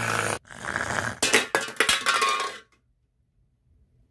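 A short rough noise, then about a second and a half of small hard objects clattering and clinking on a wooden desk.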